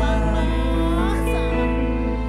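Live campursari band music played over the PA, with a steady deep bass and sustained chord tones; a gliding melody line rises and falls in the middle.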